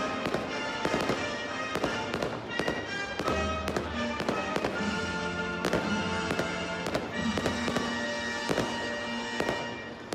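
Fireworks display: a string of sharp bangs and pops from bursting aerial shells and rockets, irregular and often several a second, over music playing throughout.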